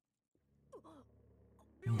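Near silence, then a faint low hum and a brief faint voice about a second in. Near the end a man's voice starts loud in a long, drawn-out exclamation, 'bruh'.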